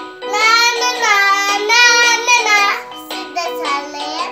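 A small child singing a long, wavering phrase into a toy microphone over a simple electronic keyboard tune; the singing breaks off a little under three seconds in while the tune carries on.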